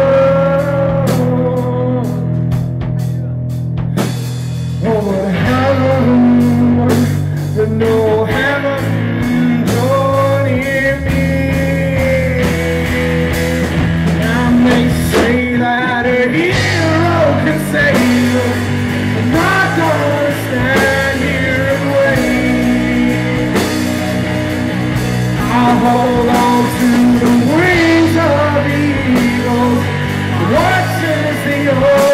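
Live rock band playing loudly: electric guitar, bass guitar and drum kit.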